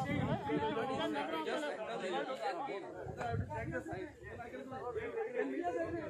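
Overlapping voices of several people talking at once: crowd chatter.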